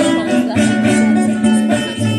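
Live ensemble music: several acoustic guitars played together, sustained pitched notes ringing over strummed chords.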